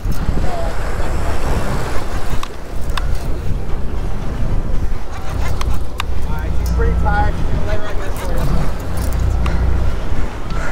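Boat engine running steadily under way, with wind and water noise from the choppy sea and faint voices underneath.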